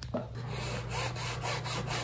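Cloth rag rubbing wet chalk paint into the woven fabric upholstery of an ottoman, a faint scratchy rub in repeated strokes.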